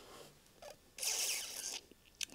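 A short rustling scrape of handling noise, under a second long, about halfway through, with a few faint ticks around it.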